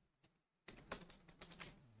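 Faint computer-keyboard typing: a quick run of keystrokes starting under a second in, as a word is typed into a code editor.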